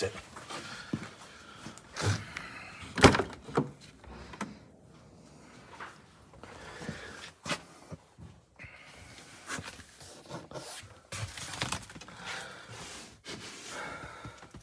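A car door latch unlatching with a sharp clunk about 3 seconds in as the door of an old Mercedes-Benz sedan is opened, followed by a few lighter clicks and knocks of handling.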